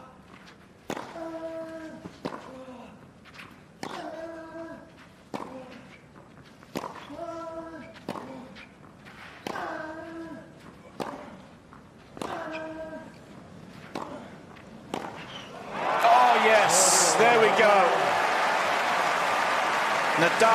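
A tennis rally on clay: sharp racket hits on the ball about every second and a half, with one player letting out a short grunt on each of his shots. Near the end the crowd breaks into loud cheering and shouting as the point reaches its climax.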